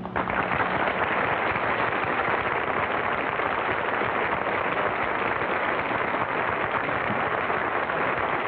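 Studio audience applauding: dense, steady clapping that breaks out just as the last violin note stops.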